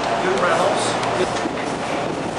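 Indistinct voices over a steady background noise.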